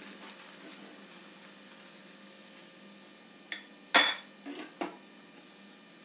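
Steel spoon and spatula clinking against cookware at an iron tawa: a few sharp clinks between about three and a half and five seconds in, the loudest near four seconds, after a quiet start.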